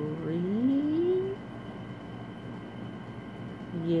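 A woman's drawn-out, wordless "hmm" while thinking, its pitch rising steadily over about a second and a half. Quiet room tone with a faint steady hum follows.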